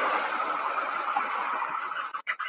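Steady hiss of room background noise, fading slowly, with no distinct event in it.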